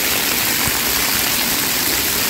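Water pouring steadily from a splash-pad umbrella fountain and nearby jets, splashing onto the wet play surface.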